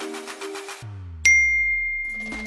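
Background music breaks off with a falling swoop. Then a single bright ding rings out and slowly fades: the bell sound effect of a subscribe-button animation.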